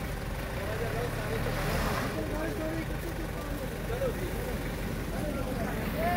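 Several people's voices talking and calling out over a steady low rumble, the voices growing clearer in the second half.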